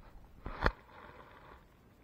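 A single sharp knock about two-thirds of a second in, followed by a brief faint rustle.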